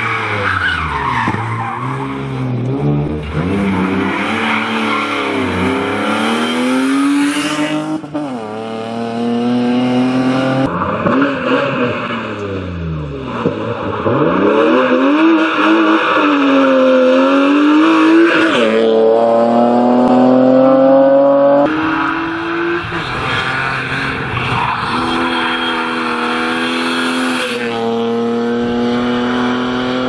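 A rally-prepared BMW E36 320i's straight-six engine revving hard. The pitch climbs steadily through each gear and drops away on braking and downshifts, and the note jumps abruptly several times. There is tyre skidding on the gritty tarmac as the car slides through the corners.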